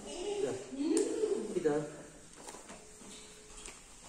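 Mostly speech: voices calling out during the first two seconds, then a quieter stretch with a few faint knocks.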